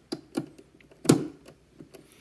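Small clicks and taps of a hand screwdriver and wire ends being worked on an L298N motor-driver board's screw terminals, with one louder knock about a second in.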